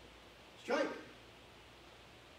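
A man's voice barking a single short drill command, "Strike!", about two-thirds of a second in; otherwise quiet room tone.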